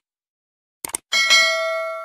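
Mouse-click sound effect, a quick double click, followed by a notification-bell ding that is struck twice and rings out, fading slowly. It is a YouTube subscribe-and-bell animation effect.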